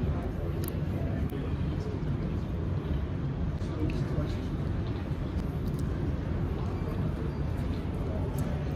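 Airport terminal background: a steady low rumble with faint, indistinct voices.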